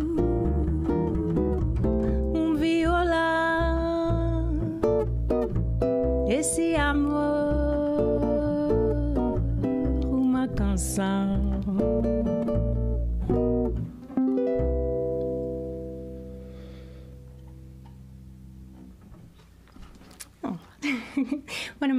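Ukulele and upright double bass playing the closing bars of a bossa nova. They end on a held chord about fourteen seconds in, which rings and fades away.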